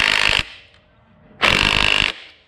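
Cordless impact wrench hammering the clutch inner-hub nut tight in two bursts: the first stops shortly after the start, and a second short burst comes after about a second's pause.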